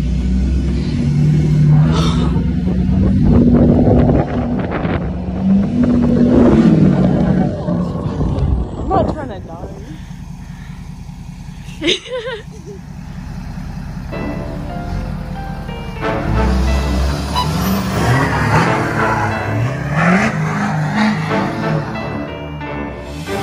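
Music over the sound of a lifted diesel pickup revving as it spins donuts in snow. The engine's rising and falling revs are heard mainly in the first several seconds, and the music takes over in the second half.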